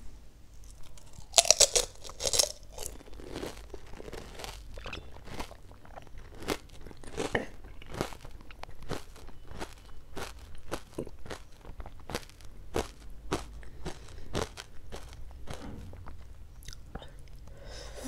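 A water-filled pani puri shell crunching as it is bitten into, loudest about a second and a half in, followed by crunchy chewing with many small crackles.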